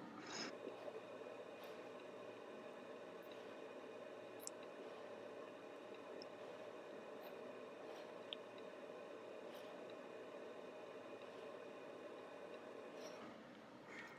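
Near silence: faint steady room tone, with a couple of tiny clicks about four and eight seconds in.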